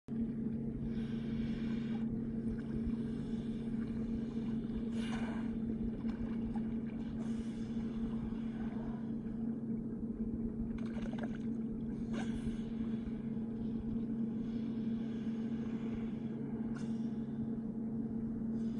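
Steady low hum of a boat motor running at a constant pitch. A few brief hissy noises sound over it.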